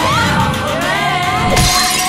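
Film-score music with a glass bottle smashing about one and a half seconds in: a hard hit and a short burst of shattering glass as a kick breaks it.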